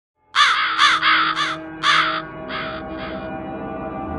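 Crow cawing about seven times in quick succession, the last two fainter, over a sustained ringing tone.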